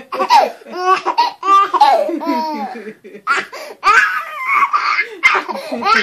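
A baby laughing hysterically in a string of high-pitched bursts, with a short break about halfway through.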